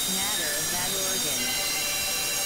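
Experimental electronic noise music from synthesizers: a dense, steady hiss under many short, gliding tones that bend up and down and shift constantly, some of them high and squealing.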